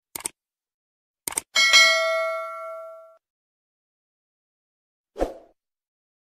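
A few sharp clicks, then a bright bell-like ding that rings for about a second and a half and fades, followed by a short dull knock near the end.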